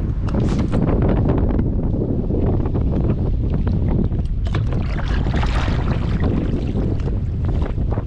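Wind buffeting the microphone over water slapping and splashing against a kayak's hull in choppy water, with a louder rush of splashing about five to six seconds in.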